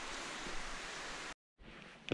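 Steady outdoor hiss of wind-and-rustle noise on a walking hiker's camera microphone. It breaks off into a split second of dead silence about one and a half seconds in, then returns quieter.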